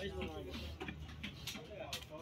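A heavy fish knife cutting through a scaled katla fish on a wooden chopping block, giving a few sharp ticks and knocks, with people talking in the background.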